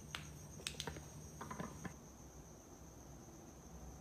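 Faint, steady high-pitched trill of a cricket, with a few soft clicks in the first two seconds.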